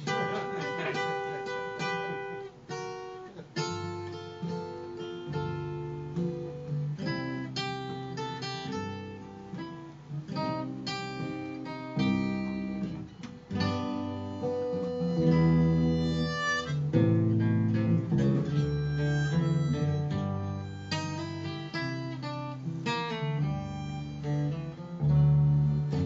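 Instrumental intro of a country-blues song on two acoustic guitars and an upright bass, with a harmonica playing over them.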